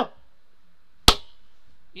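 A single sharp click about a second in, against quiet room tone.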